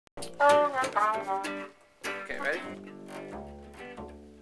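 A voice saying "Okay... ready?", then a few plucked string notes ringing on, with a low upright double bass note coming in near the end.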